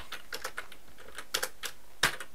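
Computer keyboard being typed on: a handful of separate keystrokes at an uneven pace.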